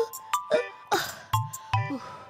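Background music of sharp percussive hits about twice a second, with ringing notes and short falling tones, over a woman's brief crying sobs.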